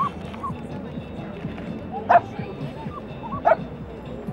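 A dog barks twice, about two seconds in and again near the end, over a steady background of crowd chatter.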